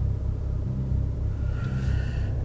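Low steady rumble of a car idling, heard from inside the cabin.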